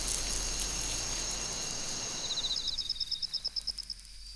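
Night ambience with insects chirping: a steady hiss, then from about two seconds in, rapid pulsed trills at two high pitches, about ten pulses a second.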